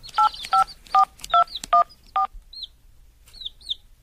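Phone keypad dialling tones: about seven short two-tone beeps, roughly three a second, as a number is dialled. A few faint high chirps follow near the end.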